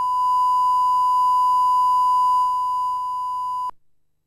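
Steady line-up test tone accompanying colour bars: a single unwavering high beep over a faint hum, cutting off abruptly shortly before the end.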